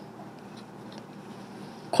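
Quiet room tone: a low, even hiss with no distinct sound events. A man's voice starts at the very end.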